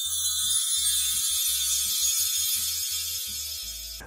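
A bright, shimmering chime sound effect, many high tones ringing together and slowly fading, over soft background music.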